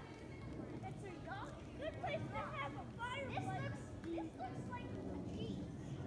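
Indistinct talking from a group of children, high voices rising and falling, most active between about one and three and a half seconds in.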